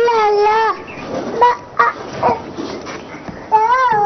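A small child's high-pitched voice in long wavering calls, one at the start and another near the end, with short sharp sounds between.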